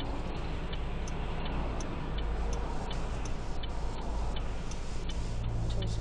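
Car turn-signal indicator clicking steadily, about three ticks a second, over the low engine and road noise inside the moving car's cabin.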